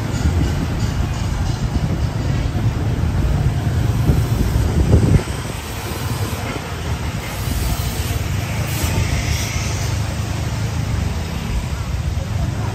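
Motorbike and scooter traffic on a narrow city street, small engines passing close by with a steady low rumble. The rumble is loudest about four to five seconds in and drops off suddenly just after. Music plays along with it.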